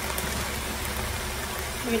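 Browned ground meat sizzling steadily in a skillet.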